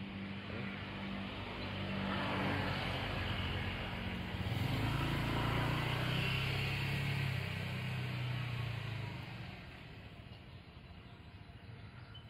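A motor vehicle's engine passing by, growing louder over the first few seconds, loudest around the middle, then fading away.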